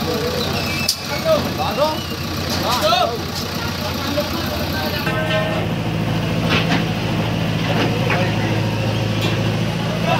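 Diesel engine of a JCB 3DX backhoe loader running while the backhoe arm is worked; its low hum gets stronger and steadier about halfway through. Onlookers' voices are heard over it in the first half.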